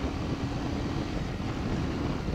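Motorcycle riding along a road: steady engine and road noise with wind buffeting the microphone.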